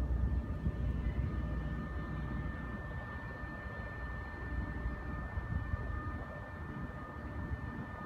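Steady low outdoor rumble, uneven in level, with a faint thin high whine that sets in about a second in and holds steady.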